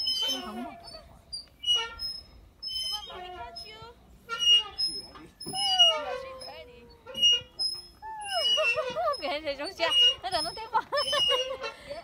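High-pitched, sing-song voices with no clear words, fullest in the second half, and short high chirps or squeaks recurring throughout.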